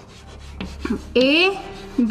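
Chalk scratching on a chalkboard in a few short, faint strokes as a letter is written, followed about a second in by a woman's voice saying the letter "A".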